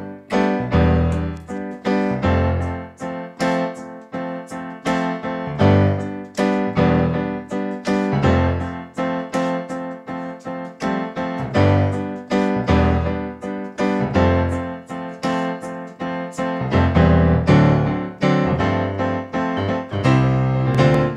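Solo Yamaha digital piano playing funk: a rhythmic low bass line in the left hand under chords in the right, in a steady groove.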